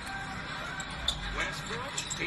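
Basketball game broadcast audio at low level: arena crowd noise with a basketball being dribbled on the hardwood court.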